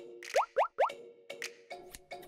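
Three quick rising 'bloop' cartoon sound effects in a row, over soft background music.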